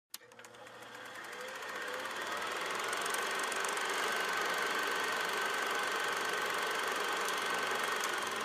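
A steady mechanical whir with a fast, fine clatter, fading in over the first two seconds and then holding level, with a faint steady high tone running through it.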